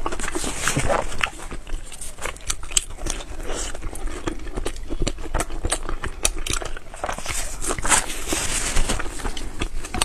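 Close-miked chewing of a soft bread bun, with wet mouth clicks and lip smacks in quick, irregular succession.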